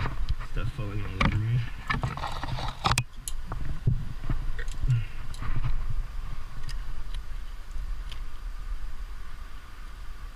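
Metal climbing gear clinking and clicking as a cam and its carabiner are handled and placed in a rock crack, with hand scrapes on rock and one sharp click about three seconds in. A brief vocal sound about a second in, over a steady low wind rumble on the helmet microphone.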